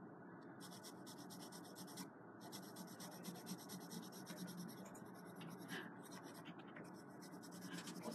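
AnB Eagle drawing pencil shading on paper in quick, closely repeated strokes, a faint steady scratching.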